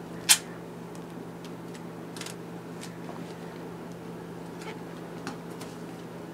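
Duct tape being handled to seal a box: a short, sharp rip of tape about a third of a second in, then scattered light rustles and ticks.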